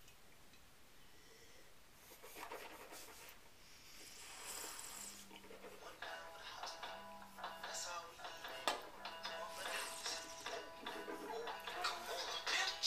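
Faint music: a simple tune of held tones comes in about six seconds in, with a low note pulsing about every two seconds beneath it.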